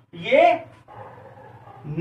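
A man says one drawn-out word, then a faint, steady scratching of a marker writing on a whiteboard.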